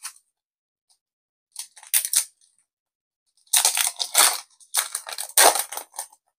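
Foil booster pack wrapper of a Digimon card game pack crinkling as it is handled and opened: a few short crackles about one and a half seconds in, then a denser run of crinkling from about three and a half seconds on.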